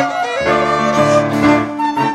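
A live folk dance band plays a lively English country dance tune with the fiddle on the melody, and lower accompanying notes come in about half a second in.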